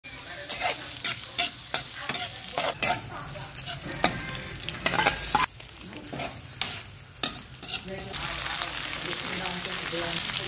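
Spatula stirring and scraping food in an aluminium wok, knocking on the pan about twice a second, over oil frying chopped onion, garlic and diced meat. About eight seconds in the stirring stops and a steady, louder sizzle takes over.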